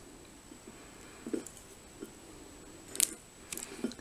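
Faint handling sounds as fingers break apart a cabanossi, a dry smoked sausage. There are a few soft knocks and ticks, then a sharp click about three seconds in.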